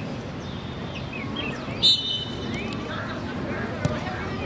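A short, sharp blast of a referee's whistle about two seconds in, over players' distant shouts. A single thud of a football being kicked comes near the end.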